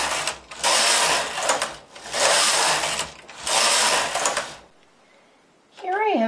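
Studio 860 mid-gauge knitting machine carriage pushed back and forth across the needle bed four times, each pass lasting a little over a second: knitting four rows. It stops about three-quarters of the way in.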